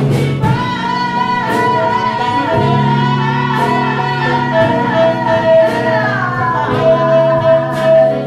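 Live jazz ensemble playing, with a woman singing long held notes, one sliding down about six seconds in, over keyboard and saxophone accompaniment.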